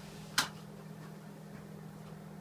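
Steady low hum of a ventilation fan running, with one sharp click about half a second in as a plastic card is slotted into its holder.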